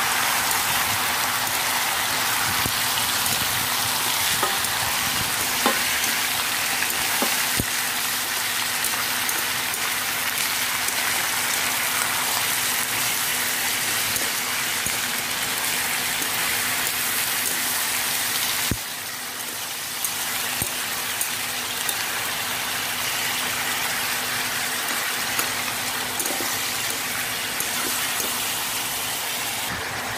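Chicken pieces and shredded ginger sizzling steadily in hot oil in a stainless steel pan, with a few sharp clicks of the stirring utensil against the pan; the chicken is being seared so the meat firms up. The sizzle drops a little quieter about two-thirds of the way through.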